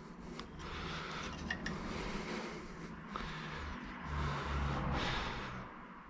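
Hands working a plastic scooter mudguard onto its fork mount, with faint scraping and rubbing of plastic, over a low rumble that swells about four seconds in.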